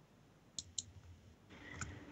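Near silence broken by two faint short clicks just over half a second in, and a third fainter click near the end.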